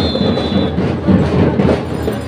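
Drums of a school drum and lyre band beating a quick, even marching rhythm, with a high tone held briefly near the start.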